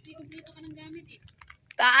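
Soft talking in the background with faint scattered clicks, then a man's voice starts up loudly near the end.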